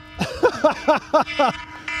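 A man laughing: a run of about five short 'ha's, each falling in pitch, in the first second and a half.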